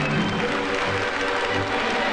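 An audience applauding steadily, mixed with background music.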